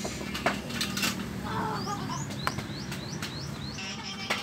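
Scattered metal clicks and knocks as a pointed tool pries the oil filter element out of a Suzuki Smash 115's filter housing. A bird chirps a quick run of short rising notes in the background a little past the middle.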